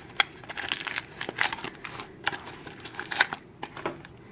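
Plastic and foil toy packaging crinkling and crackling in irregular bursts as it is unwrapped by hand, with a little tearing.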